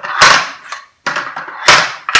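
Two loud clattering knocks about a second and a half apart, each fading quickly: the steel frame of an empty PowerBlock adjustable dumbbell handle knocking and rattling as it is handled.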